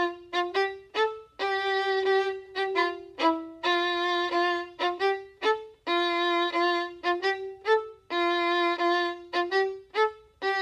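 Solo violin, bowed, playing a repeating rhythmic figure in a narrow middle range: quick short notes, each group ending on a longer held note, about once every two seconds.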